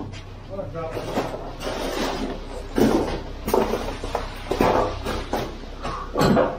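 Wet concrete being raked and spread by hand across a floor: several scraping, sloshing strokes over a steady low hum.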